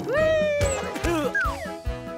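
Children's cartoon background music with a steady beat. Over it, a long falling pitched glide sounds at the start and a shorter swooping one follows past the middle.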